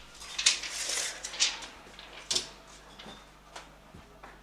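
A few scattered short clicks and scrapes from a steel tape measure being run up a wall and handled, over a low steady hum.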